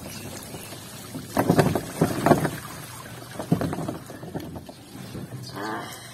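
Water splashing in shallow floodwater: a cluster of irregular splashes about a second and a half in, and another shortly after the middle.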